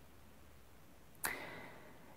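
Near silence, then a little past halfway a short, soft intake of breath that fades away, just before speech resumes.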